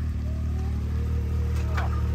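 Can-Am Maverick X3 XRS side-by-side's engine idling steadily at a constant low pitch, not revving.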